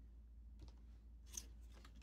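Faint rustle of stiff paper swatch cards being turned on a metal binder ring, with one short scrape a little past the middle; otherwise near silence.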